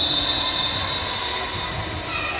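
Volleyball referee's whistle: a single long, steady high-pitched blast that fades and dies away near the end, signalling the serve.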